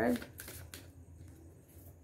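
Tarot deck being shuffled by hand: a soft run of card clicks and flicks in the first second, fainter after.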